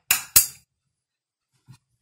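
Two sharp clicks about a quarter of a second apart, from a room light switch being flipped off, then a faint soft knock.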